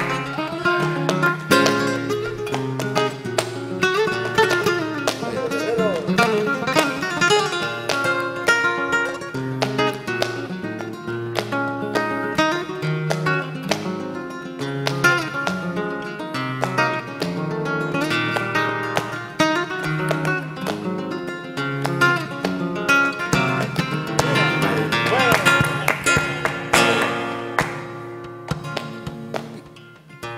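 Flamenco guitar playing an instrumental passage, with palmas (rhythmic hand-clapping) keeping time. The music dies away near the end.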